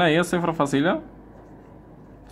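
A man's voice speaks briefly, then a pen writes numbers on paper, faint against the voice.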